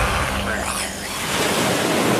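The last of a theme tune fades out just after the start, giving way to a steady wash of ocean surf, a sound effect under an animated logo.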